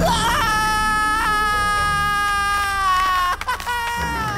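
Cartoon penguin's long, high, wailing cry, held about three seconds with its pitch slowly sliding down, then a second, shorter cry near the end, over a low steady rumble.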